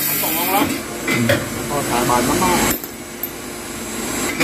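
Electric hydraulic-hose skiving machine running with a steady hiss as it strips the rubber cover from a hose end, cutting off about three seconds in, with men's voices over it.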